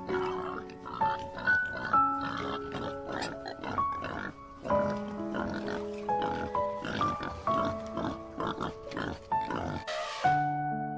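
Domestic pigs grunting over background music with a melody of steady notes. The grunts come repeatedly in short bursts throughout.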